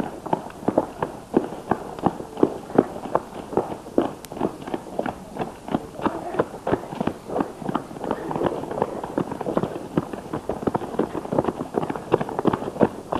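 Footsteps of a group of children running on a road: a steady stream of quick, uneven footfalls, several a second.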